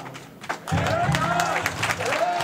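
A crowd bursts into applause about two-thirds of a second in, after a brief lull, with raised voices over the clapping.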